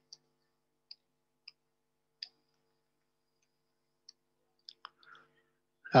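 Computer keyboard keys clicking: about eight light, separate keystrokes spread unevenly over several seconds as code is deleted and retyped, the loudest a little after two seconds in.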